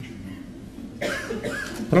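A person coughing, starting about a second in, over faint room hiss.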